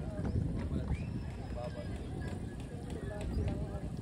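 Indistinct voices of people talking in the background, over a rough, irregular low rumble.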